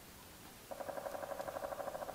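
An animal call in the background: a rapid buzzy rattle that starts under a second in and lasts about a second and a half.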